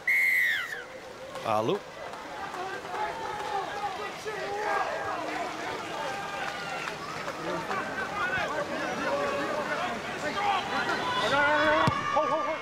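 Referee's whistle: one short, shrill blast that drops in pitch as it ends, signalling a penalty. Afterwards a steady mix of many voices from the players and crowd.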